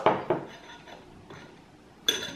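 Faint tabletop handling sounds of fingers peeling the red wax coating off a small round cheese, with soft rubbing and a few light knocks. A short sound at the very start fades quickly.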